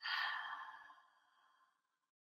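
A woman's breathy sigh, about a second long, fading out.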